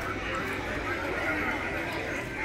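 Sound effects from a Halloween display: a horse whinnying with hoof clops, mixed with voices.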